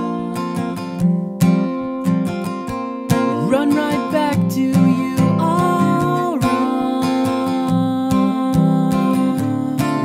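Ovation CC28 acoustic-electric guitar strummed in a steady rhythm of chords. For about three seconds in the middle, a voice holds sung notes over the strumming.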